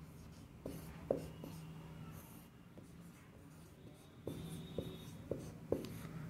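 Marker pen writing on a whiteboard: soft, scattered ticks and strokes of the tip as letters are written, with a faint hum underneath.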